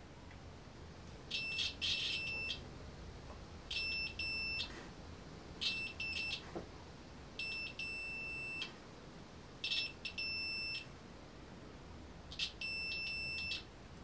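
UNI-T UT60A digital multimeter's continuity buzzer beeping six times, each beep about a second long, as the probe tips touch the conductive embroidery thread. Each beep signals a closed, low-resistance path through the thread. Several beeps stutter at the start while the probes settle into contact.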